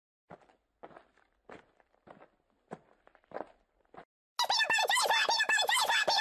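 Footsteps: about seven faint, evenly spaced steps a little over half a second apart. Loud music comes in suddenly after about four and a half seconds.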